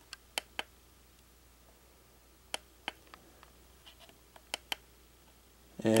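Camera buttons being pressed while its white balance setting is changed: about a dozen sharp, irregular clicks, some in quick pairs.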